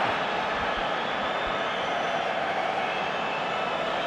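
Football stadium crowd noise, a steady even din.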